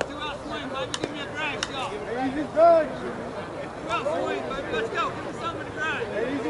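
Several people's voices calling out and chattering across a ball field, overlapping one another, with a couple of sharp knocks about a second in.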